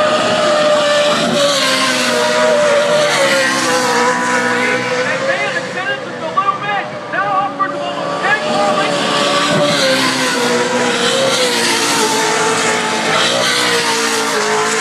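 Off-road race truck engines running at high speed on a dirt track: a loud, steady drone of several overlapping engine tones, dipping slightly in pitch near the end.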